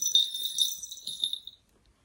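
Jingly metal charms hanging from a bag, shaken by hand and ringing with a bright, high jingle that dies away about a second and a half in.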